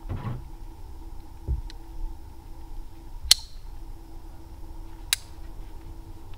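A metal carabiner clicking twice, two sharp clinks nearly two seconds apart, the first ringing briefly, over a faint steady hum.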